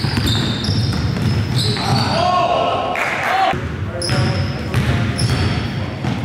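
Live sound of a basketball game in an echoing gym: the ball bouncing on the hardwood floor, sneakers squeaking in short high chirps, and players' voices calling out across the hall.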